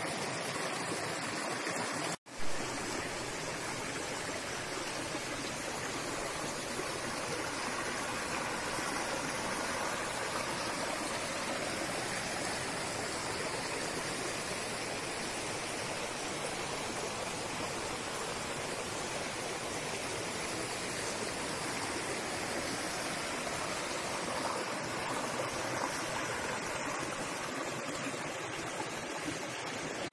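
Shallow rocky stream running over stones, a steady even rush of water. The sound drops out for a moment about two seconds in.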